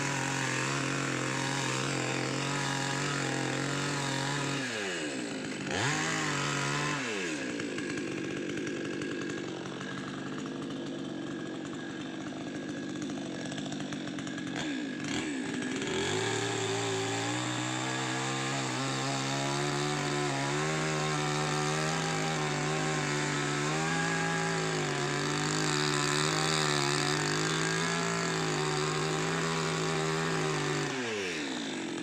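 Two-stroke chainsaw running at high revs. Its note drops and climbs back about five seconds in and again about fifteen seconds in, then holds higher and wavers slightly.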